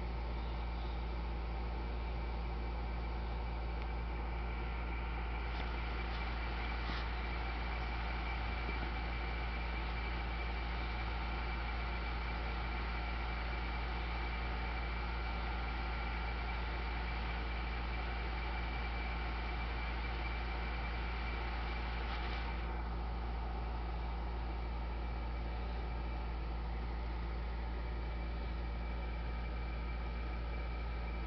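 Steady background drone: a low electrical-sounding hum with hiss and faint high whines, like a fan or appliance running. No distinct events, only a couple of faint ticks, and the hiss thins a little about 22 seconds in.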